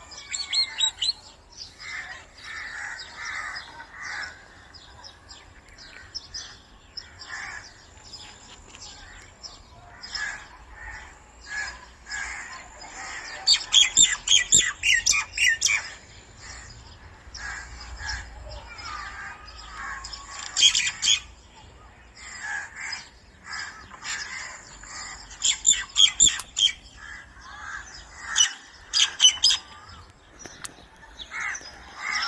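Birds chirping and calling outdoors. Several louder bursts of rapid calls come about halfway through and again near the end.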